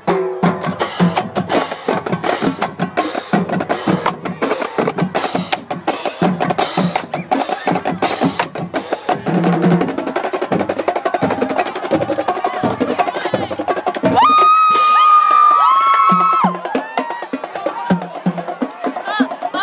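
High school drum line playing a fast, dense cadence of snare and rim clicks with bass drum hits. About three-quarters of the way through, a loud held high note of about two seconds rises over the drums, followed by shorter rising-and-falling calls.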